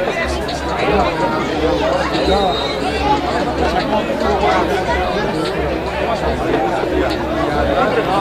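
Several people talking and calling out at once, an overlapping chatter of voices, with a low rumble underneath.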